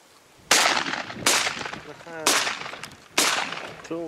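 Shotgun fired four times in quick succession, roughly a second apart, each shot a sharp report that trails off briefly.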